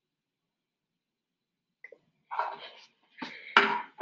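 Silence for the first half. Then, about two seconds in, a short noisy rustle, followed near the end by a louder burst of handling noise with a sharp knock, as glassware and the bench are moved about.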